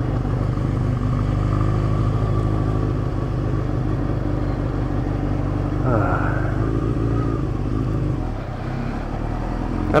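Honda CBR600F2's inline-four engine running steadily at low speed. There is a short rev about six seconds in, and the engine note falls off near the end as the bike slows.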